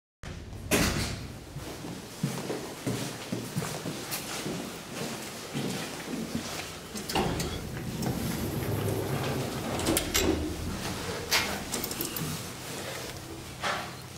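Thyssen traction elevator's doors and car: a series of knocks, clicks and a door sliding, the loudest knock about a second in, with a steady low hum underneath in the second half after the car button is pressed.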